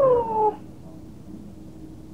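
A single high, drawn-out call lasting well under a second, sliding down in pitch, much like a cat's meow.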